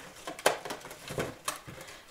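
Cardstock of a handmade paper satchel rustling and tapping as it is handled and opened, with a sharp click about half a second in and another near a second and a half.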